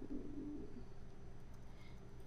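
A woman's faint, low hum, a brief hesitant 'mm' in the first half-second, then quiet room tone.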